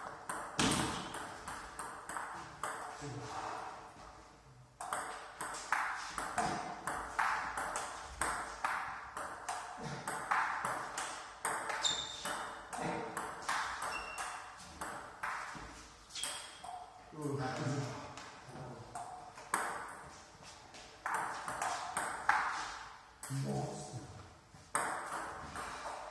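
Table tennis rallies: balls clicking off the bats and bouncing on the tables in quick, irregular runs, with rallies going on at more than one table at once. Voices come in now and then.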